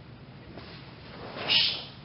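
A short, sharp kiai-style shout or forceful exhale from a karateka as he executes a technique, about one and a half seconds in.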